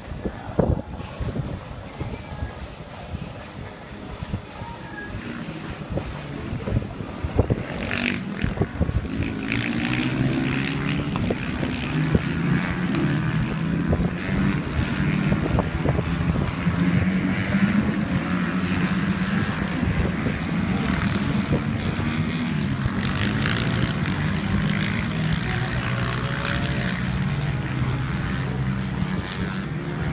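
Supermoto racing motorcycles running around the circuit, their engines revving up and dropping back again and again as the riders shift gears. The engine sound grows louder about eight seconds in.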